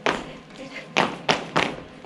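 Dancers' boots stepping and stomping on a wooden stage floor: a hit at the start, then three quick hits about a third of a second apart about a second in.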